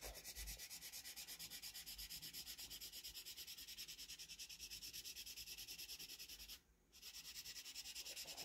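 Black felt-tip marker scribbling on paper: faint, quick, even rubbing strokes as the edge is blacked in, with a brief break near the end.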